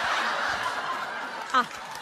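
Audience laughing. A short spoken 'Ah' comes near the end.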